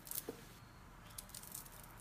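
Faint handling noise: a few light clicks and rustles, mostly near the start, over quiet room tone.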